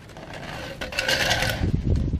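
Coil of black corrugated plastic drain pipe scraping and rubbing as it is pulled off the front of a van, followed by a low thump near the end as it is handled down.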